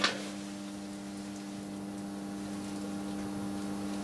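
Steady electrical mains hum, two low steady tones, from the meter test setup running under about 35 amps of load. A single sharp click right at the start.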